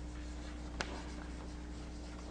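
Chalk writing on a blackboard: faint scratching strokes with one sharp tap of the chalk about a second in, over a steady low electrical hum.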